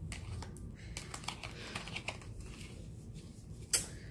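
Tarot cards being handled: a run of light, irregular clicks and taps, with one sharper snap just before the end.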